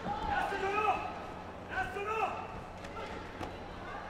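High-pitched shouted calls from voices off the mat, two short bursts in the first half, over a low steady hum.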